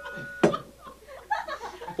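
A single sharp cough about half a second in, as a steady ringing tone cuts off, followed by soft chuckling and murmured voices.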